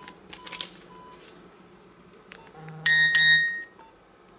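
A Nokia mobile phone gives a short, bright chiming alert about three seconds in, its text-message tone signalling an incoming SMS. A few faint short beeps from the phone come before it.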